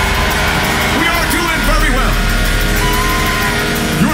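Live rock band playing loud amplified music, with sustained electric guitar and drums, and a voice singing or calling over it.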